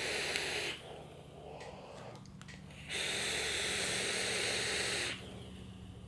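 A vaper drawing on a Kanger Dripbox's rebuildable dripping atomizer. The steady hiss of air pulled through the atomizer ends under a second in. After a two-second pause, a long breathy exhale of vapour lasts about two seconds.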